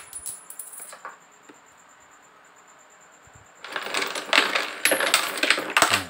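Coins clattering and clinking in the clear rotating drum of a homemade automatic coin counter and sorter for 1, 2, 5 and 10 baht coins, as the coins are carried round and dropped into the sorting chutes. A few clinks come at the start, then a lull of about two and a half seconds, then a dense, loud run of clatter from a little past halfway.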